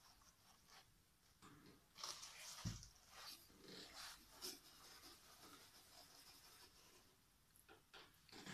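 Near silence with faint handling noise: soft rustling and light clicks as the cardboard puppet boat is pushed over the cloth, and a soft thump a little under three seconds in.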